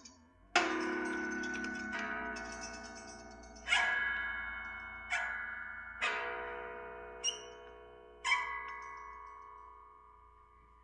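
Prepared electric guitar struck about seven times, each hit ringing out in several bell-like tones that slowly die away, played through effects pedals.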